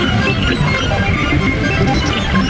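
Multi-tracked electronic music played on analog synthesizers and Eurorack modular synths: a dense, busy layer of many quick sequenced notes at a steady level.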